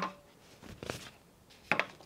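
Paper letter cards being handled and set against a whiteboard: a few short taps and rustles, one right at the start, one about a second in and a double one near the end.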